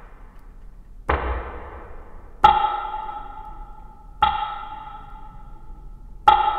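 Sampled sounds triggered from drum-machine pads and played through a fully wet spring-reverb effect. A noisy percussive hit comes about a second in, then a pitched note is struck twice, and each hit trails off in a long reverb tail.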